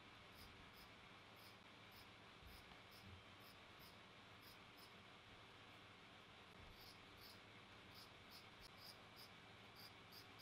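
Faint, irregular snips of fabric scissors cutting a strip from stretch jersey fabric, over near-silent room tone, coming more often near the end.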